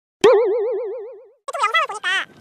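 A cartoon "boing" sound effect: one sudden pitched tone with a fast, even wobble in pitch, fading out over about a second.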